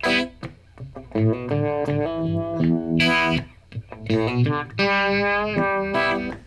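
Strat-style electric guitar played through a Uni-Vibe effect, picking a bluesy E minor pentatonic riff of single notes and slides, with a louder chord hit about halfway and notes held near the end.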